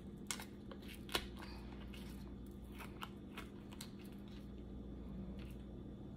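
Silicone mold being flexed and peeled off a cured resin square: a few short, sharp crackles and clicks, spaced irregularly, the clearest about a second in.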